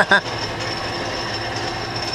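Hardinge DSMA automatic turret lathe running steadily between operations: an even mechanical hum with a thin, constant high whine.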